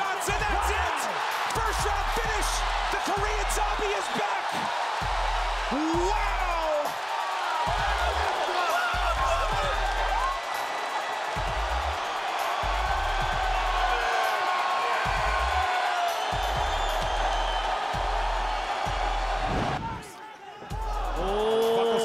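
Arena crowd cheering and shouting over background music with a steady bass beat about once a second. The sound dips briefly near the end.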